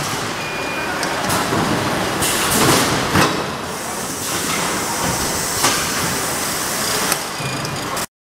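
Automatic carton packing line running: a steady mechanical din from the conveyors and case-handling machinery, broken by sharp clacks and knocks, the clearest about three seconds in.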